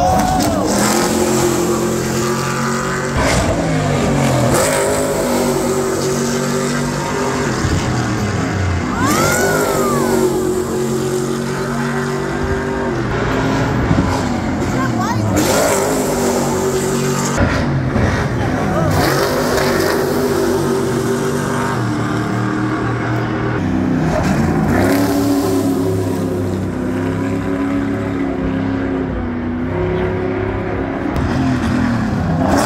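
Stadium Super Trucks' V8 engines racing past on a street circuit one after another, revving and shifting, their pitch rising and falling with each pass.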